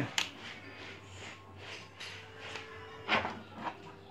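Faint clicks and rustling of hands handling battery clamps and wires, with one louder knock about three seconds in, over a low steady hum.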